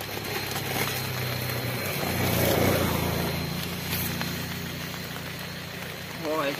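A motor vehicle's engine hum that swells to its loudest about two and a half seconds in, then slowly fades, as a vehicle passes.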